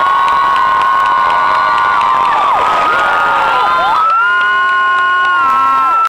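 Audience of teenagers cheering after a dance act, with several long, high-pitched screams held over one another.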